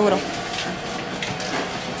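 Steady indoor room noise of a restaurant: an even background hum and hiss with no distinct events. A woman's voice trails off at the very start.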